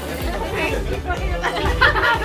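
Several people chattering at once over background music with a steady beat.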